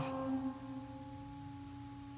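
Pipe organ's 8-foot gedeckt middle C pipe sounding a steady held tone. The diapason's pipe dies away about half a second in, leaving the gedeckt alone. It is half a note sharp, sounding like C sharp, and needs to be made longer to tune it down.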